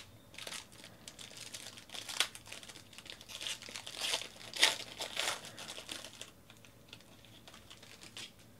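Foil wrapper of a 2019 Panini Origins football card pack being torn open and crinkled by hand, loudest about four and a half seconds in and stopping about six seconds in.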